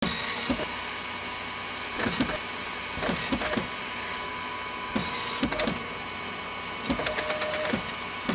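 A steady mechanical hum with scattered clicks and short bursts of hiss every two to three seconds, like a small machine whirring and clicking.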